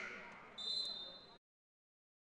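Faint gymnasium murmur, then one short, steady, high-pitched whistle blast about half a second in, lasting under a second, typical of a basketball referee's whistle.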